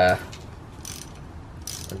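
Socket ratchet clicking in two short runs, about a second in and near the end, as a coilover strut's lower fastener is snugged only lightly.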